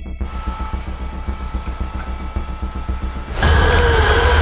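Trailer score and sound design: a fast, low clicking pulse, ratchet-like and mechanical, under a faint steady high tone. About three and a half seconds in, a sudden, much louder burst of sound cuts in.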